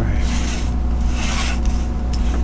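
Gold foil tarot cards being slid and dealt onto a wooden tabletop: two scraping swishes of card across card and wood, about a second apart, over a steady low hum.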